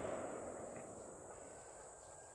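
The rolling echo of a distant gunshot, fading away steadily over about two seconds.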